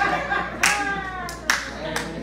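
Hand claps: three sharp claps less than a second apart, each followed by voices, with a lighter clap near the end.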